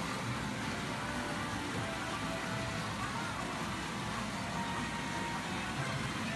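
Steady din of a pachinko parlor: a constant roar of many machines with snatches of their electronic music and jingles.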